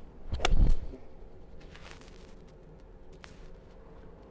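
A golf iron swung down and striking a ball off an artificial turf hitting mat: one sharp click of impact with a dull thud about half a second in.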